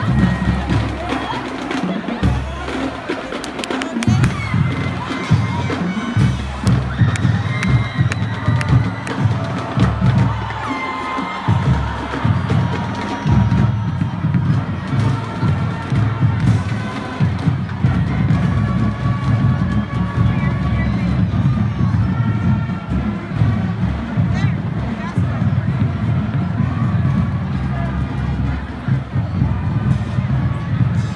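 Marching band playing, with brass and sousaphones holding notes over a heavy low end, while a crowd cheers and talks.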